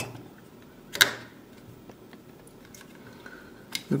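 Hands working the plastic housing of a smart plug apart. There is one sharp plastic click about a second in, faint rubbing and handling after it, and a few small clicks near the end.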